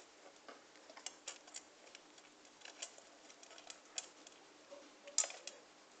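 A kitten eating dry dog food from a stainless steel dog bowl: faint, irregular clicks and crunches, the loudest about five seconds in.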